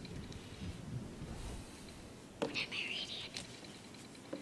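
Faint whispering, with two light knocks in the second half.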